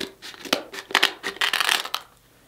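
Kitchen scissors snipping through a king crab leg's shell: a rapid, uneven run of sharp snips and cracks.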